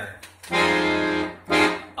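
Piano accordion sounding a held F minor chord for about a second, followed by a short, louder chord stab near the end.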